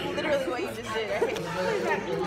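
Only speech: indistinct chatter, voices talking without clear words.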